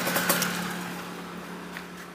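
Yamaha RX-King's 135 cc two-stroke single-cylinder engine idling with a steady, even note that grows gradually fainter.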